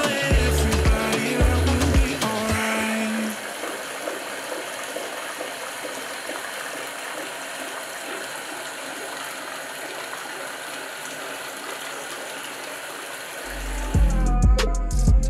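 Background music with deep bass notes for the first three seconds, then a steady rush of water pouring from a bathtub spout into a filling tub. Bass-heavy music comes back in near the end.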